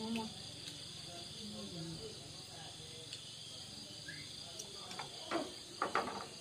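Crickets chirring steadily at a high pitch, with a few sharp clinks of spoons against ceramic bowls near the end.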